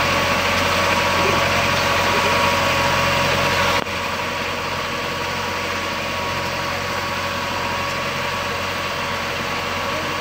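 A small passenger boat's engine running steadily, with a steady hum over a rushing wash of water and wind. The whole sound drops suddenly to a slightly lower level about four seconds in.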